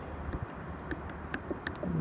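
Motor oil pouring from a plastic jug through a funnel into an engine's filler, a steady low pour with faint scattered clicks.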